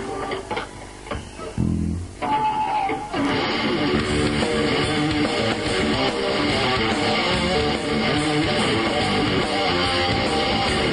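Live rock band starting a song: a few separate bass and electric guitar notes, then about three seconds in the full band comes in with strummed electric guitar and bass playing steadily.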